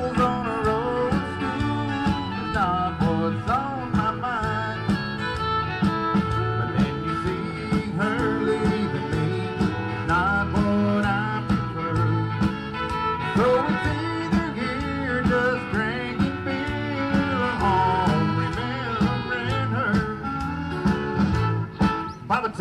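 A country band playing a song, with guitars over a steady beat.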